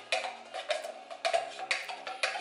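A metal spoon scraping and knocking inside an opened tin of condensed milk, giving a quick irregular run of sharp clicks, over faint background music.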